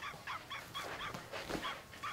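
An animal giving a steady run of short, high chirping calls, about five a second.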